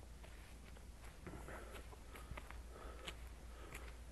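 Faint footsteps on a dry dirt path: scattered light crunches and clicks with soft rustling.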